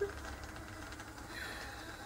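Electric vertical egg cooker running quietly: a faint steady hum with a soft sizzle as the egg mixture bubbles up and spills out of the top of its tube.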